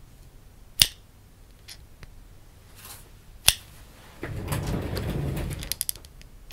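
Two sharp finger snaps close to the microphone, about a second in and again about two and a half seconds later. From about four seconds in, a close rustle of hands and clothing moving right by the microphone, with a quick run of small clicks near the end.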